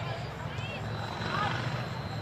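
Football players calling out on the pitch in short shouts, over a steady low drone.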